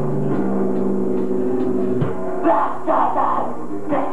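A metal band playing live on stage. Held guitar and bass notes ring for about two seconds, then a hit comes in and the drums follow with loud crashing cymbal and drum hits about twice a second.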